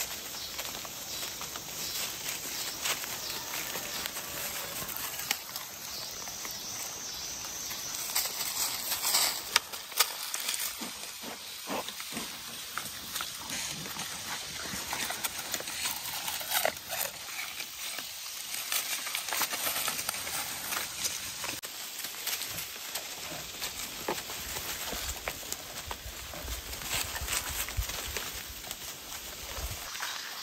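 Goats browsing in woodland undergrowth: leaves and stems rustling and tearing and hooves stepping through dry leaf litter, busiest around ten seconds in and again around sixteen to twenty seconds, over a steady high hiss.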